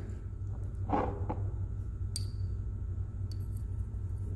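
Two light glass clinks about a second apart, the glass dropper tip touching the glass test tube, each with a brief high ring, over a steady low hum.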